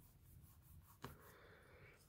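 Faint scratching of a pen writing on notebook paper, starting just after a light tick about a second in.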